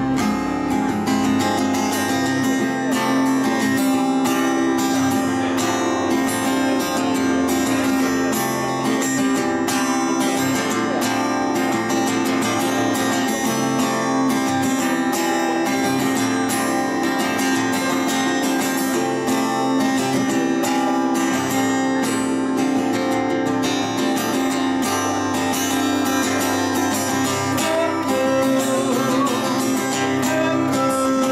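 Acoustic guitar strummed in a steady rhythm, an instrumental passage with no singing.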